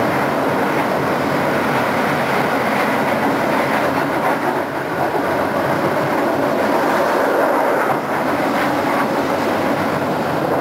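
Konstal 105Na tram running along the track at speed: a steady rumble of wheels and running gear, with a few faint clicks from the rails.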